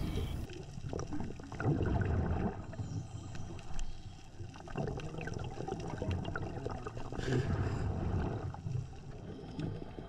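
Underwater water noise around a moving camera: muffled gurgling and rumbling that swells in longer stretches every few seconds as the diver swims across the reef.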